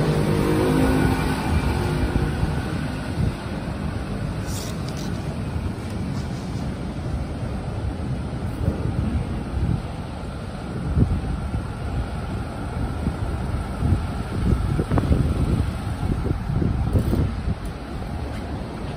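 City street traffic: cars passing on a wet road, with wind rumbling on the microphone. A pitched engine sound fades out in the first second or two.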